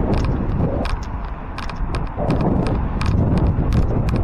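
Low, steady rumble of wind and road noise on the microphone of a moving onboard action camera, with irregular sharp clicks and rattles several times a second.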